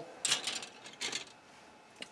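Plastic model kit sprues handled and set down, giving light clicking and rustling in the first second or so.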